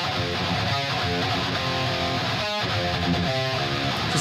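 Doubled, heavily distorted electric rhythm guitars playing a metal riff on their own, widened only slightly by a Waves S1 Stereo Imager set to a width of about 0.2. Playback starts abruptly, has a short break about two and a half seconds in, and stops at the end.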